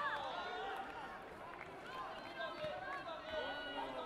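Several voices shouting and calling out over one another during a taekwondo bout, with a loud high-pitched call right at the start.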